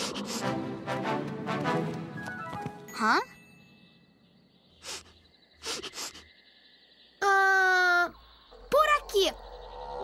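Cartoon soundtrack: background music with wordless cartoon-character vocal sounds. After a quieter stretch with a few short breathy sounds comes the loudest moment, a held vocal call that drops slightly in pitch about seven seconds in, followed by two quick rising-and-falling calls.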